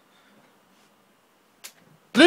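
Near silence: faint room tone, broken by a single sharp click near the end.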